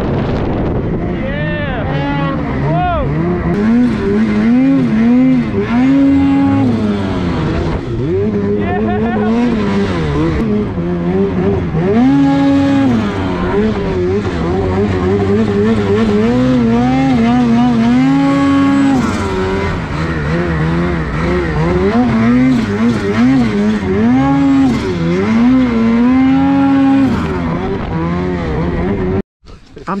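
Two-stroke snowmobile engine revving up and down again and again, loud and close, as the sled is ridden through deep powder. The sound cuts off suddenly near the end.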